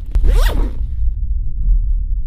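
A bag zipper pulled open in one quick stroke, lasting about half a second near the start, over a steady deep low rumble.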